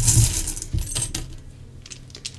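Small hard objects rattling and clicking together as they are handled, a loud burst at the start that thins to scattered clicks after about a second.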